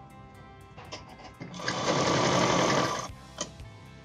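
Sewing machine running in one short burst of about a second and a half, stitching pleats down through the pant fabric, over soft background music.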